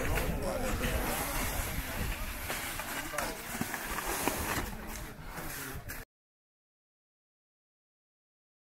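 Indistinct voices over a steady rumbling outdoor noise, cutting off abruptly to dead silence about six seconds in.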